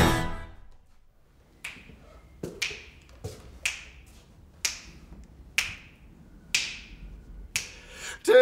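A strummed acoustic guitar chord fades out. Then finger snaps keep a slow, steady beat of about one snap a second, each with a short echo, counting in a blues song.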